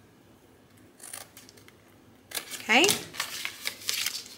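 Scissors making a few short snips into stiff cardstock along its score lines, with the rustle of the card being handled.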